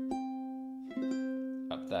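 Flight Fireball ukulele played fingerstyle, a short riff high on the neck with pull-offs to open strings. A low note rings under higher notes, and new notes come in just after the start and again about a second in.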